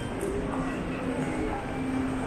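Steady low rumble and murmur of a busy indoor shopping concourse, with distant voices and passers-by's footsteps on a stone floor.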